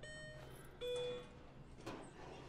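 Elevator's electronic arrival chime: two beeps, the second lower in pitch, each about half a second long. A soft click follows near the end.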